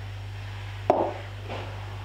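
A single sharp knock about a second in, a glass jar set down on the kitchen worktop, over a steady low hum.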